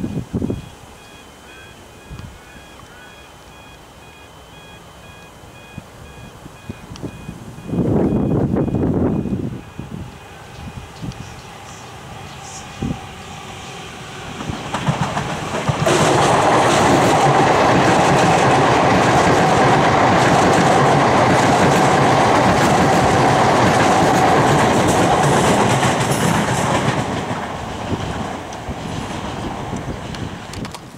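A High Capacity Metro Train (HCMT) electric train passing at speed. Wheels on the rails clatter under a steady hum, loud from about halfway through and easing off near the end, after a brief loud low rumble about eight seconds in.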